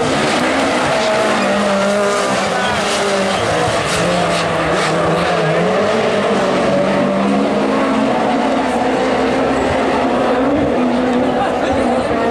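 Super 1600 rallycross cars' engines running hard around the circuit, their pitch rising and falling as the drivers rev, lift and change gear.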